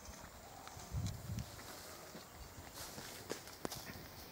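Footsteps pushing through tall dry grass and undergrowth, with a few low thuds about a second in and several sharp twig-like snaps near the end.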